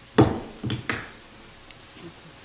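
A gavel rapped on the bench to adjourn the meeting: one loud sharp knock, then two lighter knocks about half a second later.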